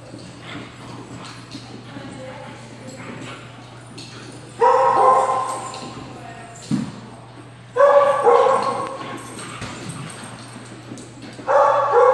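Dog barking three times during play, a few seconds apart, each bark ringing on in the large hall.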